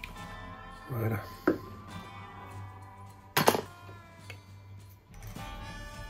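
Background music with a few sharp knocks and clicks from a screwdriver and plane parts being handled on a workbench. The loudest knock comes about three and a half seconds in.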